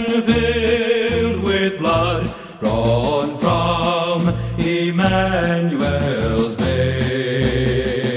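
A recorded song playing: a voice singing over a low bass line.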